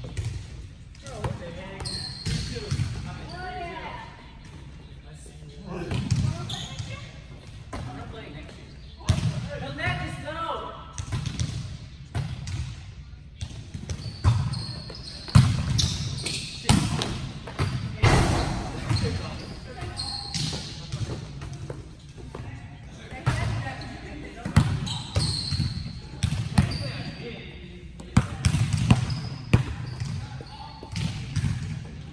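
Indoor volleyball being played: repeated sharp smacks of the ball being hit and striking the court floor at uneven intervals, with players' voices calling out between them, in a large reverberant hall.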